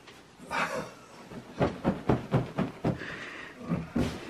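A pillow being stuffed into a cotton pillowcase, with the fabric rustling and a run of quick rhythmic pulses from about a second and a half in.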